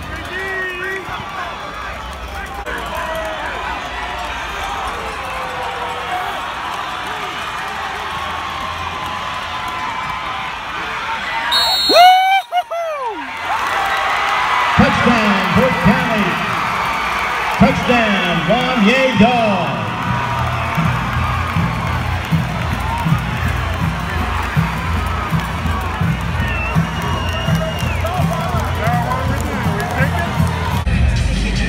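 Football stadium crowd noise: spectators talking and cheering, with music playing under it and a brief drop-out about twelve seconds in.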